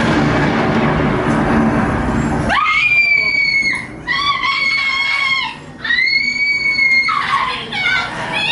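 A couple of seconds of dense, noisy rumble, then a high-pitched voice screams three times, each scream held for about a second.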